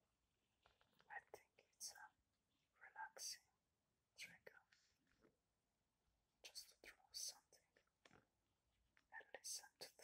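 A man whispering softly in short, broken phrases close to the microphone.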